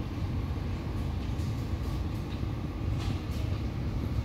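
Steady low background rumble, the shop's ambient noise, with a few faint soft rustles.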